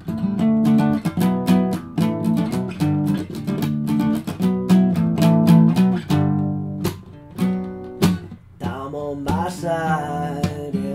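Acoustic guitar strummed in a steady rhythm for an instrumental break, thinning out to a few single strums in the last few seconds.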